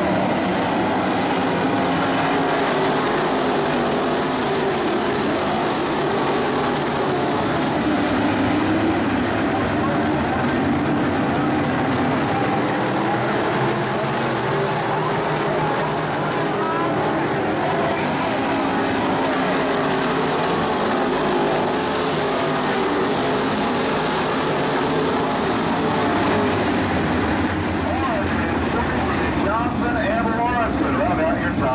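IMCA Modified dirt-track race cars' V8 engines running together around the oval, their pitch rising and falling as the cars accelerate and lift through the turns.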